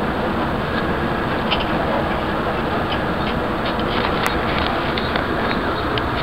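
Steady engine and road noise inside the cabin of a moving bus, with scattered light clicks and rattles and one sharper click about four seconds in.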